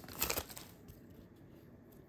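Foil wrapper of a hockey card pack crinkling in short bursts as the torn pack is handled and the cards are slid out, fading to faint rustle within about half a second.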